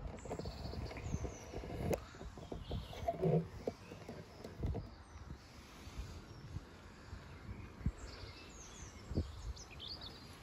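Small birds chirping on and off, with short high calls near the start, around the middle and in the last couple of seconds. An uneven low rumble and a few soft thumps run underneath.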